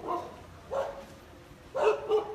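A dog barking once, briefly, about a second in.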